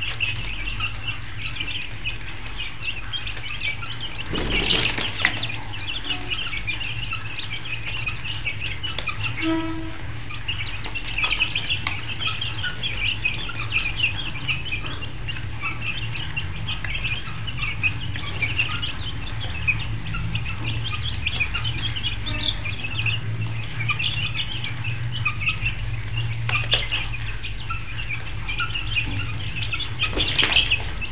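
Many birds chirping in a dense, unbroken chatter over a steady low hum, with a brief louder noise about four and a half seconds in.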